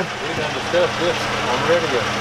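Semi truck's diesel engine idling with a steady low hum, under people's voices.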